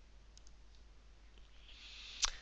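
Near silence with a few faint computer mouse clicks, two close together about half a second in.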